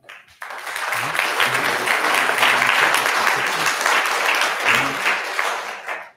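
Audience applauding. It starts about half a second in, holds steady, and dies away just before the end.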